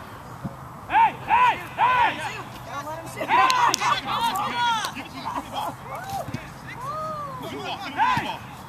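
Men shouting and calling out across a soccer field during a match: three short shouts about a second in, several voices overlapping in the middle, then fainter scattered calls and one longer call near the end.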